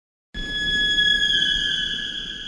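A high, steady squealing tone with overtones over a low rumble. It starts about a third of a second in and slides slightly down in pitch partway through, as the opening sound of a hip-hop album's intro track.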